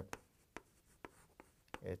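Chalk writing on a chalkboard: a few sharp taps and scratches of the chalk as a word is written.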